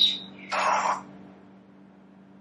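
Necrophonic spirit-box app playing through a phone's speaker: a short chirp at the start, then a brief garbled noisy burst about half a second in, after which only a faint steady hum remains.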